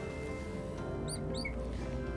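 Marker tip squeaking on a writing board, two short high squeaks about a second in. A soft background music bed of sustained tones runs underneath.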